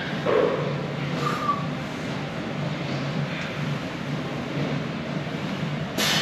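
Steady gym room noise with a short grunt from a powerlifter bracing under a heavy barbell back squat just after the start, and a brief faint ping about a second in.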